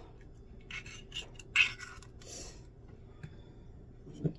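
Cracked eggshell handled over a ceramic bowl: a few short scrapes and clicks, the loudest about a second and a half in, as the last of the white drips out and the shell is set aside.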